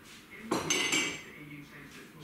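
A short clatter of hard objects knocked together, with a ringing clink of several high tones, starting about half a second in and dying away within about half a second.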